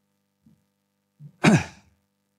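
A man's short, breathy sigh about one and a half seconds in, falling in pitch.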